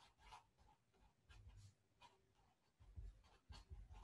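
Faint felt-tip marker strokes on paper: a string of short scratches as a word is handwritten, with a few soft knocks of the hand on the writing surface.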